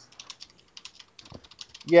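A quick run of faint, irregular light clicks, several a second, stopping just before the talk resumes.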